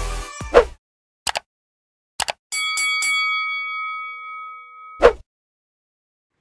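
Intro sound effects: the electronic intro music ends with a hit about half a second in, two quick clicks follow, then a bell-like ding rings out for about two and a half seconds and is cut off by a sharp hit.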